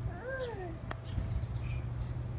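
A single drawn-out call, rising briefly and then falling in pitch over about half a second, followed by a sharp click; faint high chirps sound around it over a steady low hum.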